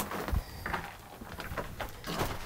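Faint knocks and scuffs, with a low thump about a third of a second in.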